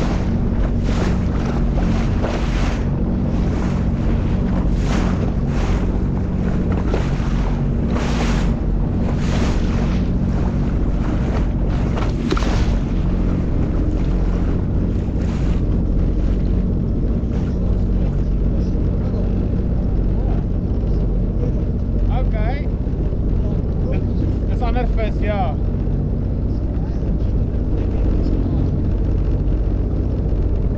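A motorboat's engine running steadily, with water splashing against the hull again and again during the first half. Wind is also on the microphone.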